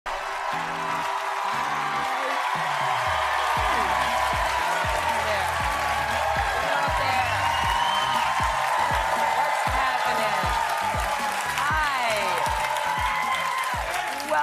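Studio audience clapping and cheering over upbeat theme music with a steady beat of about two drum hits a second.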